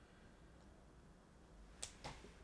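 Near silence: faint room tone, broken by one sharp click near the end.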